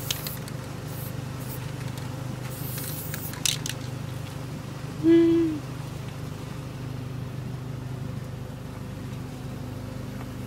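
Aerosol spray-paint can hissing in short bursts over the first few seconds, with a steady low hum underneath. About five seconds in comes the loudest sound, a short voiced note lasting about half a second that dips in pitch at its end.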